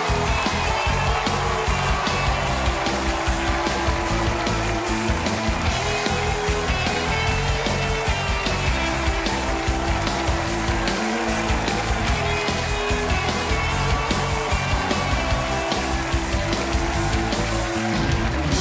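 Talk-show house band playing upbeat walk-on music with a steady beat as a guest comes on stage.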